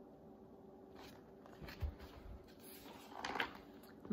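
Faint rustling and a soft low thump as a paperback picture book is handled and moved away from the camera, with a second brief handling noise near the end.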